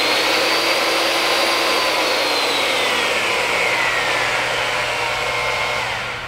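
AGP DB32 digital tube bender's 1700 W electric motor and gear drive running in reverse, turning the bending former back to its zero-degree start position. It is a steady high whine that climbs in pitch as the soft start brings the motor up to speed. It then slowly sinks in pitch over the second half and fades near the end.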